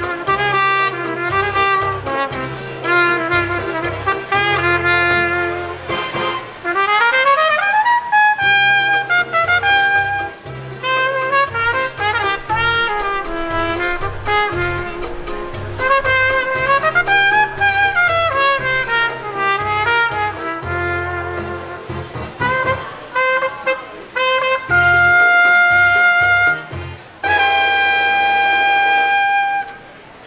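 Solo trumpet playing a Latin-style instrumental melody over a bass line, with quick runs, a rising glide, and an arching phrase. Near the end it holds two long sustained notes to close the tune, then stops.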